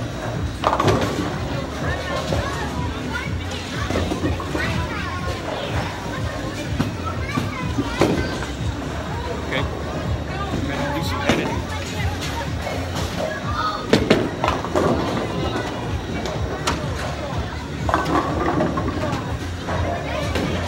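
Bowling alley din: background music and voices, with occasional sharp knocks and clatters from balls and pins on the lanes.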